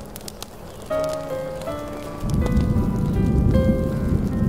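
Smooth jazz playing over steady rain, with single sustained notes coming in about a second in. About halfway through, a low rumble of thunder rolls in and becomes the loudest sound.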